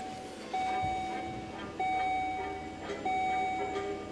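A car's electronic warning chime sounding a steady pitched beep over and over, long beeps with short gaps, about one every second and a quarter.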